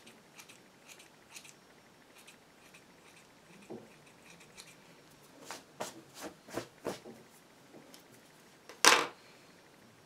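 Small scissors snipping the synthetic-fibre fringe of a wig: a series of short, crisp cuts, faint at first and louder and quicker about five to seven seconds in. One louder, longer sound stands out near the end.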